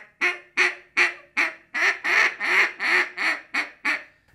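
Double-reed mallard duck call (Power Calls Jolt DR, a molded J-frame call) blown in a run of about a dozen quacks, roughly three a second, building louder toward the middle and tapering off. It shows the call's bottom end for finesse calling.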